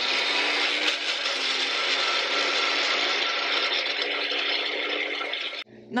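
Single-serve cup blender running steadily, its blades grinding chunks of raw ginger and aloe vera gel with no water added. The motor cuts off shortly before the end.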